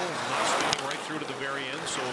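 Ice hockey broadcast sound from the arena: a voice over steady crowd noise, with a couple of sharp clicks from play on the ice about a third of the way in.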